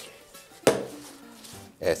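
A single sharp knock about two-thirds of a second in, as a plastic squeeze bottle is set down on a wooden chopping board, over soft background guitar music.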